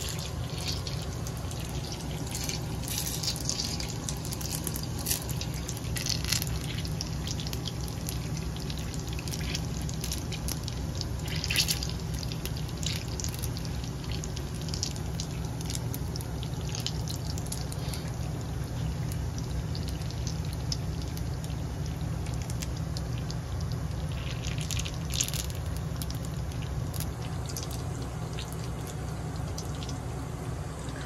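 Breaded curry bread deep-frying in hot oil in a commercial fryer: steady sizzling with scattered crackles and pops, over a constant low hum.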